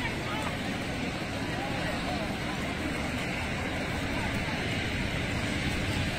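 Steady outdoor wash of noise on a heavy-rain day, rain and road traffic blended together, with faint distant voices.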